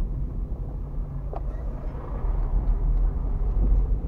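Steady low rumble of a car's engine and tyres heard inside the cabin on a rough, patched road, with a few faint clicks and rattles.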